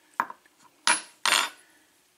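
Metal parts of a disassembled euro lock cylinder clinking and scraping together as the plug is handled against its housing: a light click, then two short metal-on-metal scrapes.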